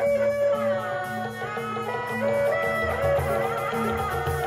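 Live Sundanese traditional dance music from an ensemble with hanging gongs, played through loudspeakers. A wavering, sliding melody line runs over a low, steady beat.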